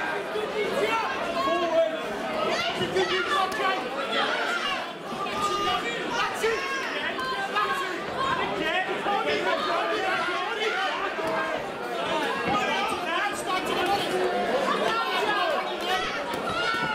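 Crowd of ringside spectators talking and calling out, many voices overlapping in a large hall.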